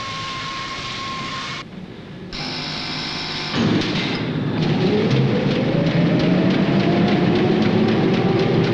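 Rotary printing press starting up: a loud mechanical rumble comes in about three and a half seconds in, with a whine that climbs steadily in pitch as the cylinders run up to speed. Before it, a steady high hum cuts off shortly before two seconds in.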